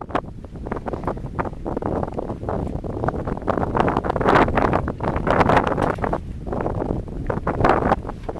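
Wind blowing across the camera microphone in loud, uneven gusts that swell and fade, loudest in the middle and again near the end.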